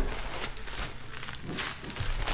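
Plastic packaging crinkling and rustling as it is handled, a dense run of small crackles.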